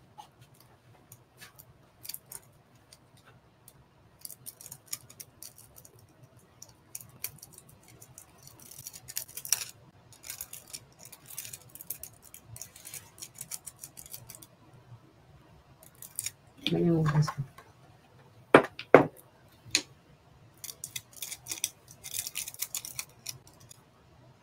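Nail transfer foil crinkling and rustling in fits as it is rubbed onto a gel-coated nail and peeled away, with a few sharp ticks.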